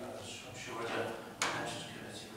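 A man's voice reading aloud into a desk microphone, with one sharp click or knock about one and a half seconds in.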